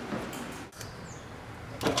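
Steady low background noise, with a brief drop about two-thirds of a second in and a few small clicks near the end.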